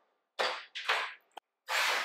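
Short scraping, rustling handling noises and a single sharp click as a plastic milk jug and a measuring spoon are handled and the jug is set down on the counter.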